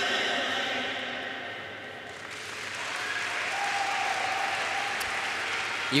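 Rock program music winding down over the first two seconds, then rink audience applause building up as the routine ends.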